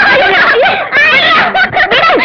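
Children laughing with several voices overlapping, lively and loud.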